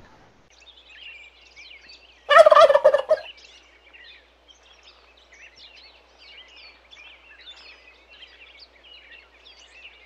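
A turkey gobbling once, loudly, about two seconds in. Faint high chirping runs behind it throughout.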